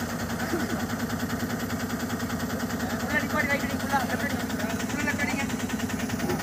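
Ashok Leyland truck's diesel engine running steadily at low speed with an even throb. From about halfway through, men's voices are heard calling out.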